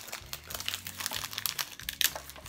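Perfume packaging crinkling and crackling as it is handled, a string of small irregular crackles.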